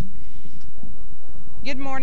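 A pause between spoken words over a steady low hum, then a woman's amplified voice begins speaking near the end.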